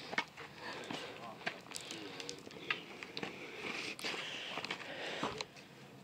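Faint, indistinct voices with scattered crunching footsteps on a gravel path; the sounds fall away near the end.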